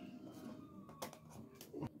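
Faint, light clicks of TT120 model railway points being switched over by hand: a few short clicks, the clearest about a second in and another near the end.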